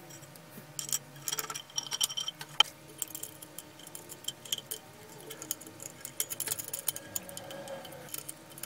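Small metal parts and a plastic lamp housing being handled and fitted together during reassembly: a run of light clicks, clinks and rattles, a few of them ringing briefly about two seconds in.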